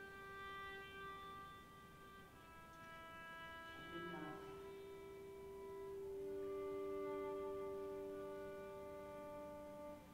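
Violin playing slow, long held notes that change pitch every two seconds or so, with a brief rough bow sound about four seconds in and two notes sounding together in the second half.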